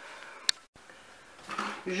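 Quiet room tone with a single sharp click about half a second in, followed by a brief dead gap where the sound is cut off; a voice begins again near the end.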